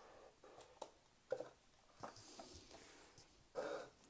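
Cardboard product box being opened by hand: a few faint soft knocks, then a quiet rubbing hiss as the lid slides off the inner tray.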